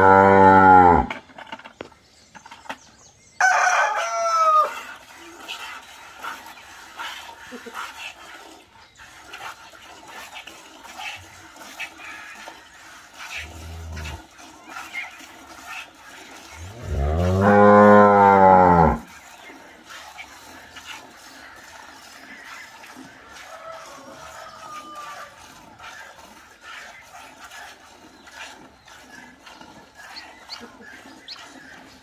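Cattle mooing: one long, loud moo at the start and another about 17 seconds in. A shorter, higher call comes about three seconds in.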